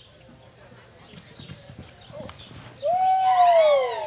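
Hoofbeats of a loping horse on soft arena dirt. About three seconds in, a loud, long call with many overtones rises slightly, holds, then slides down in pitch for over a second.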